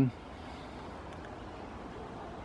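Steady, faint outdoor background noise with no distinct events, like a distant hum of traffic, after the last word of a man's speech at the very start.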